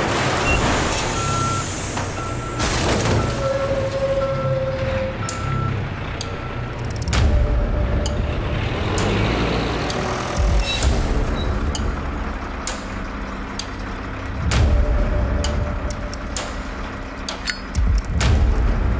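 Heavy dump truck's reversing beeper sounding in short, evenly spaced beeps, about three every two seconds, over the low rumble of its diesel engine; the beeping stops about seven seconds in. Several sharp knocks and crunches stand out against the rumble.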